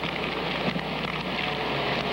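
A steady rushing noise with a low hum beneath it.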